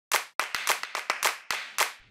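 A quick, irregular run of about a dozen sharp slaps, each dying away quickly.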